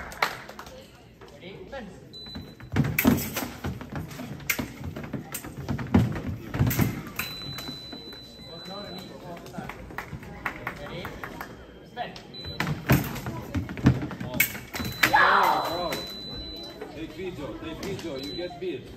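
Electric fencing bout: sharp clicks and knocks of blades and footwork on the metal piste, with a steady high electronic tone from the scoring machine sounding several times, the longer ones lasting under two seconds each, and voices in the hall.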